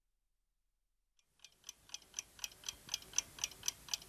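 Clock ticking, about four ticks a second, starting about a second and a half in and growing steadily louder.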